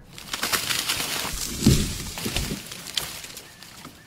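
Sound effect of a heavy robot body crashing down through branches: crackling and rustling of twigs and leaves, with a heavy thud about 1.7 s in as it hits muddy ground, then fading.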